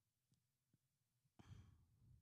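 Near silence, then a faint breath near the end.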